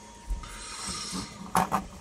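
A person drawing a breath, a soft hiss that builds over about a second, then a couple of small clicks near the end.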